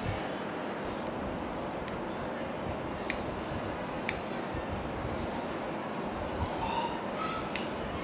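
Metal spoons clinking against a plate while shredding tender cooked lamb, with three sharp clicks standing out, over a steady background hiss.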